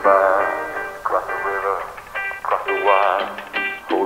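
A male vocalist sings three drawn-out phrases with vibrato over a band's sustained chords.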